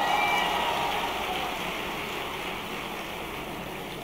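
Large indoor audience applauding, the clapping loudest at the start and slowly dying away.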